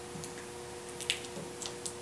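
Light handling noises of plastic drinking-straw pieces and tape on a table: a handful of small, sharp ticks and crinkles, mostly in the second half.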